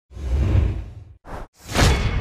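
Edited-in whoosh sound effects, three swells. A long whoosh comes first, then a brief one just past a second in, then a rising whoosh that builds to the loudest point near the end.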